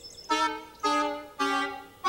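A comic musical sting: three short horn-like notes about half a second apart, each a step lower than the last.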